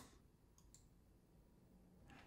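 Near silence with a single faint computer-mouse click a little under a second in, as the System Restore button is clicked.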